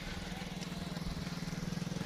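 Motorcycle engine running at a steady low pitch with a rapid firing pulse, drawing gradually louder as the bike comes up behind.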